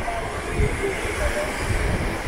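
Wind buffeting the microphone in uneven low rumbles over the steady wash of small waves breaking on the shore.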